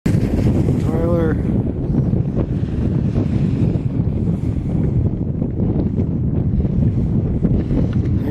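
Wind buffeting the microphone, a steady low rumble. About a second in, a person shouts once, briefly.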